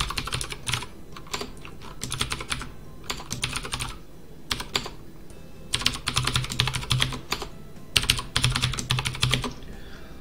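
Typing on a computer keyboard: about five quick bursts of keystrokes with short pauses between.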